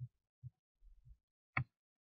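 A few faint, short low thumps, then one sharper click about one and a half seconds in, with near silence between them.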